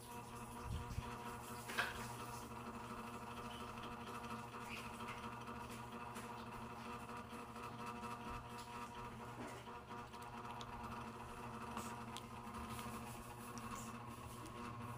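Steady low machine hum with one faint click about two seconds in.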